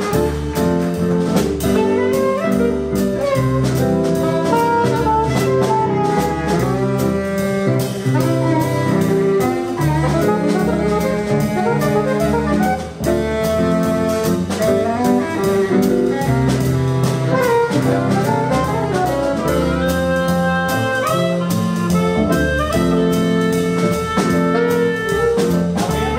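A live jazz combo playing: several saxophones over upright bass, keyboard piano and drum kit. Evenly spaced cymbal strokes keep a steady beat.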